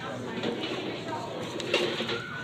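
Indistinct voices of people talking in a busy dining room, with a brief tap or click near the end.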